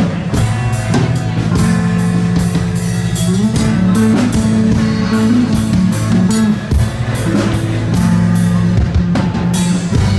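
Live rock band playing an instrumental passage: electric bass, strummed acoustic guitar and drum kit, with the bass line moving under a steady beat.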